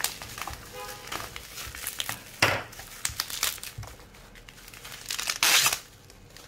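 Plastic bubble wrap crinkling and rustling as wrapped bottles are handled and pulled from their packaging: an irregular run of crackles, with louder bursts about two and a half seconds in and near the end.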